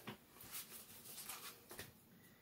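Near silence: quiet room tone with a few faint, soft rustles of a hand moving over cards on a table.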